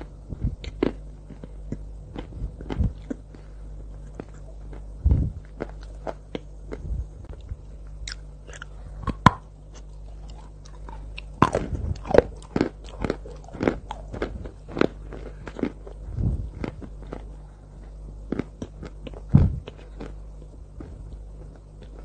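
Close-miked biting and chewing of lumps of white chalk coated in cocoa sauce: many sharp, crisp crunches, densest about halfway through, over a faint steady low hum.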